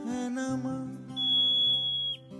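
A long, shrill, steady whistle from a marmot, starting about halfway in and ending with a quick downward drop, over a Hindi film song with singing.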